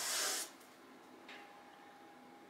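A short breathy hiss lasting about half a second, then near silence: room tone.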